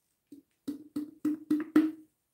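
Plastic squeeze bottle of acrylic paint being squeezed in quick pumps over a cup, giving a series of about six short pitched pops, roughly four a second.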